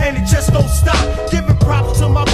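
A 1990s underground hip-hop track: a rapper's verse over a drum beat with a deep bass line.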